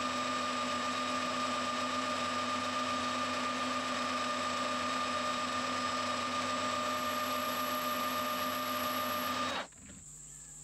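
Metal lathe running with its chuck and aluminium workpiece spinning, a steady mechanical whine over a running noise; it cuts off suddenly near the end.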